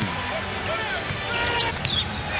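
Basketball being dribbled on a hardwood court over arena crowd noise, with a few short squeaks partway through.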